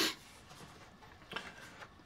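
Faint handling noise from a carded toy package: a short rustle of card and plastic at the start, then a soft brief scrape about a second and a half in.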